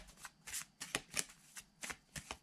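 A deck of tarot cards being shuffled by hand: a quick, uneven run of papery card slaps, about four or five a second.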